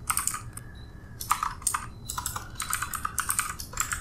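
Typing on a computer keyboard: a few key clicks, a short pause, then a quick run of clicks until near the end.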